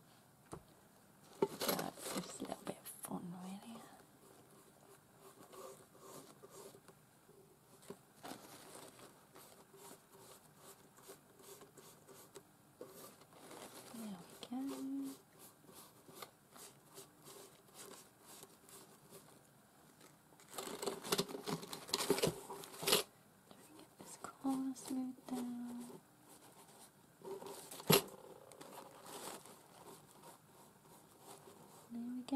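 Thin paper napkin crinkling and rustling as it is smoothed and brushed down with glue, with scattered handling clicks. The busiest stretches come near the start and about two-thirds of the way through, with one sharp click near the end.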